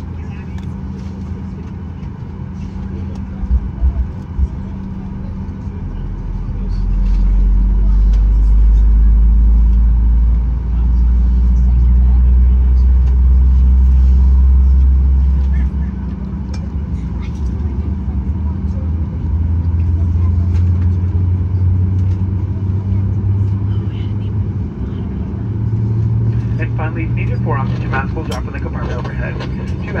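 Steady low hum and rumble inside the cabin of a Boeing 737-800 as it is pushed back from the gate, with a louder low rumble lasting about ten seconds from around six seconds in. A cabin announcement voice comes back near the end.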